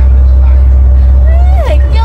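Passenger ferry's engine running with a steady low drone, heard from inside the cabin. A voice briefly slides in pitch near the end.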